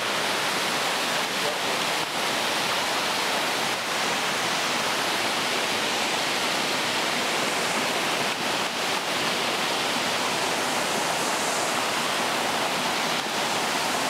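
A waterfall and the cascades below it, with water falling into a pool and pouring over rocks in a steady, unbroken rush. It is more hiss than rumble.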